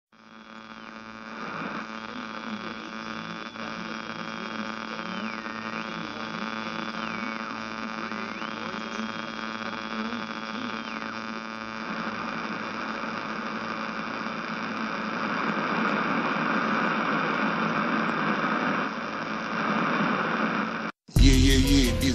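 Steady buzzing hum rich in overtones, fading in at the start. In the first half a high thin tone slides up, holds and drops back down several times, and a hiss swells in the second half. The hum cuts off abruptly shortly before the end, and a hip-hop beat kicks in for the final second.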